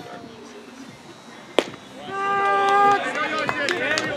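A baseball smacking into the catcher's mitt with a single sharp pop, followed about half a second later by the plate umpire's strike call, one shouted word held on a steady pitch for nearly a second, then other voices.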